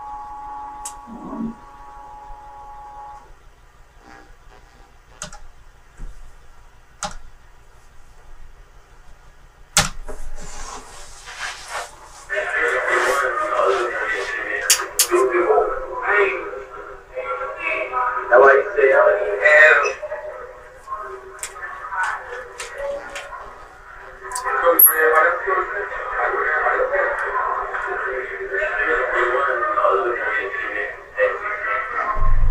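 A tape of people talking played back through a laptop's small speaker, thin and hard to make out, starting about twelve seconds in. Before it, a quiet room with a few sharp clicks.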